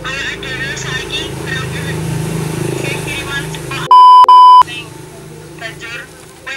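Two loud, steady high-pitched censor bleeps in quick succession about four seconds in, each about a third of a second long, blanking out a spoken word or name.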